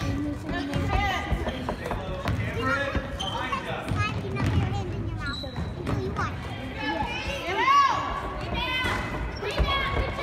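Basketball dribbled on a hardwood gym floor during play, under shouting voices from spectators and players.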